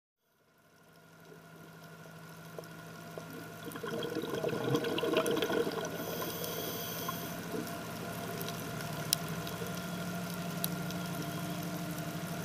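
Dive boat's auxiliary engine heard underwater as a steady hum with several held tones, fading in over the first few seconds. There is a rush of water noise about four to six seconds in, and scattered faint clicks.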